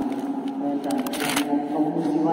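A monk speaking into a handheld microphone, with a short rustling hiss about a second in.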